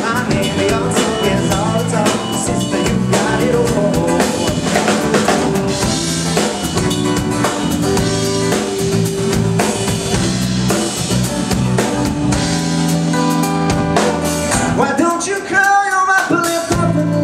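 Live band playing an instrumental passage of a pop-rock song, with drum kit, bass guitar and strummed acoustic guitar. The singing comes back in near the end.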